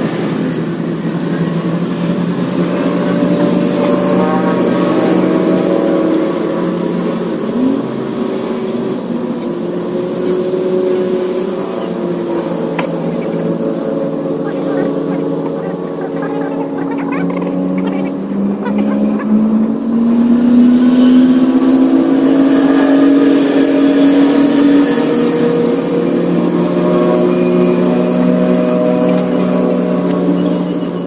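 An engine runs steadily off camera. Its pitch slowly rises about two-thirds of the way through, then holds.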